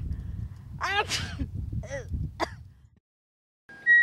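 Short vocal outbursts from a woman about a second in and again around two seconds, over wind rumbling on the microphone. The audio then drops out, and a steady high electronic tone begins just before the end.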